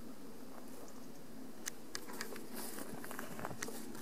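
Footsteps through grass: irregular light crackles and rustles that begin about a second and a half in, over a steady low hum.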